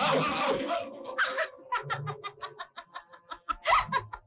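A young woman laughing in a quick run of short bursts, several a second, after a loud, noisy burst at the start and with another loud burst near the end.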